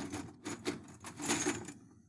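Loose metal nails clinking and rattling in several short bursts as a handful is gathered, dying away near the end.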